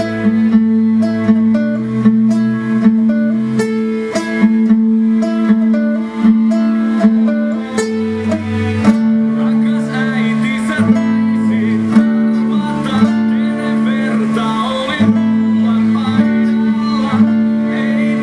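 Acoustic guitar plucked by hand: picked notes over a steadily ringing low note, the higher melody growing busier about halfway through.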